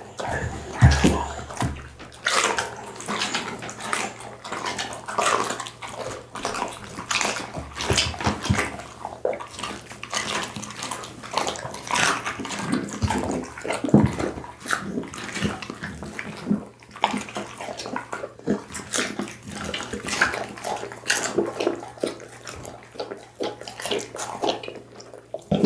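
Pit bull chewing raw meat close to the microphone: wet smacking and licking of lips and tongue, with many irregular short clicks.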